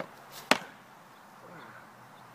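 One sharp smack about half a second in, with a short swish just before it: a flat sheet of cardboard swung overhead and brought down hard on a person lying on the grass.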